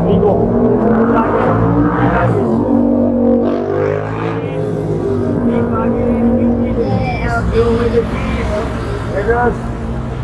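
Street traffic, with a car engine running close by, and people talking in the background.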